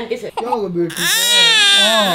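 A newborn baby crying: one long wail starting about a second in, its pitch rising and then falling.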